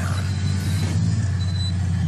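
Off-road buggy engine running as it drives over dirt, under a steady background music bed.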